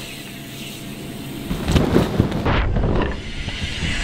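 Wind rushing over an outdoor camera microphone, growing louder about a second and a half in, with a few dull thumps around two seconds.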